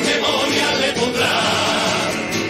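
A large carnival choir singing a satirical cuplé in chorus, accompanied by its plucked-string band of guitars and lutes.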